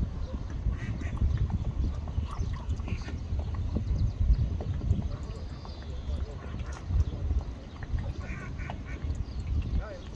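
Wind buffeting the microphone, a loud uneven low rumble, with faint distant voices and a few short calls near the end.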